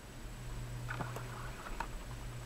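Faint, steady low hum, with two soft ticks about a second in and near the end.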